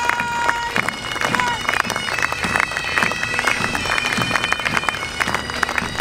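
Highland bagpipes playing over their steady drones: a held note that breaks off about a second in, then from about two seconds in a higher tune of held notes broken by quick ornaments.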